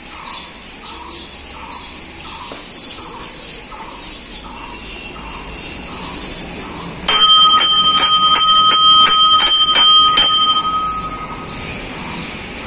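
A short call repeats about every three-quarters of a second. About seven seconds in, a hanging brass temple bell is rung hard by its clapper, about three strikes a second for some three seconds, and its ringing then fades out.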